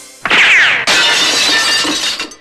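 Sound effect of glass shattering: a sudden falling-pitched sweep, then a loud crash whose fragments tinkle away over about two seconds.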